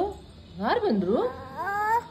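Toddler's wordless vocalizing: a rising-and-falling call about half a second in, then a long rising call near the end.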